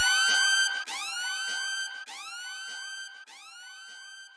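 Siren sound effect closing a dancehall track: a rising whoop that levels off into a steady tone, repeated by an echo about every 1.2 seconds and getting quieter with each repeat until it dies away near the end.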